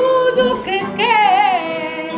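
A woman singing fado with wide vibrato, holding long notes, over plucked guitar accompaniment.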